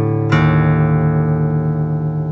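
Acoustic guitar: a chord struck about a third of a second in, left to ring and slowly fade.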